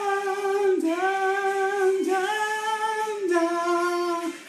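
A man singing a cappella, holding long notes that step between a few pitches with short slides between them.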